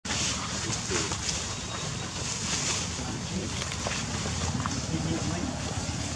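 Indistinct background voices over a steady outdoor hiss, with no clear words.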